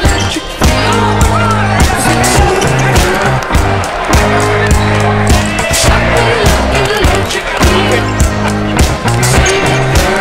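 Background music with a steady beat and heavy held bass notes.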